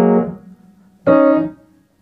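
Yamaha piano keys struck twice, about a second apart, each sound fading away within about half a second; the second is pitched higher than the first.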